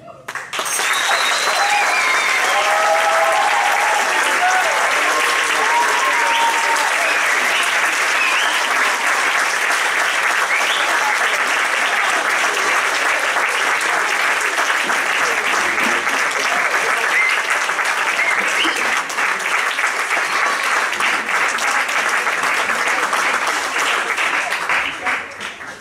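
Audience applauding, starting about half a second in and going on at a steady level, with a few cheering voices over it in the first few seconds.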